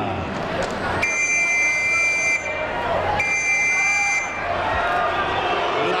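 Two long, high, steady buzzer-like tones over crowd noise: the first lasts about a second and a half, the second about a second, with a short gap between them.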